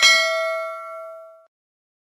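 A single bell ding sound effect for the notification-bell button, struck once and ringing out over about a second and a half as it fades.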